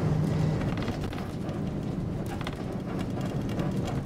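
Inside a city bus: the engine's steady low hum and running noise, with a few light rattles.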